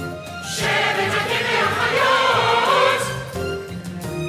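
Choir singing with instrumental accompaniment. A steady pattern of repeated instrumental notes runs underneath. The full choir comes in loudly about half a second in and holds until about three seconds in, when the instrumental pattern comes forward again.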